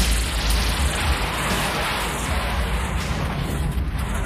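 Film sound effect of a huge tunnel-clearing machine (the Cleaners) running down a brick tunnel: a loud, steady, noisy rumble with a deep low end.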